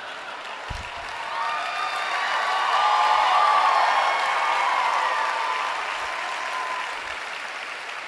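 Audience applauding, swelling to a peak a few seconds in and then dying away.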